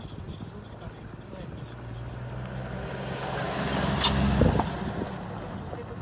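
A low, steady motor hum with a rushing noise that builds through the middle and fades again. A sharp click comes about four seconds in.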